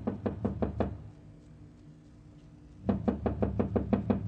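Knocking on a door: a quick run of raps, then after a pause a second, longer run of raps about three seconds in.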